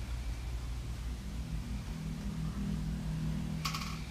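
Low, steady room hum with a faint drone joining in about a second in, and a short rattle or rustle near the end.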